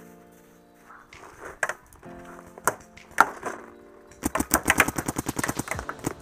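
Paintball marker firing: a few single shots, then a fast string of shots at about a dozen a second lasting nearly two seconds.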